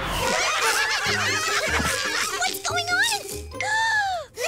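Cartoon voices giggling and laughing over bouncy background music with a recurring bass line.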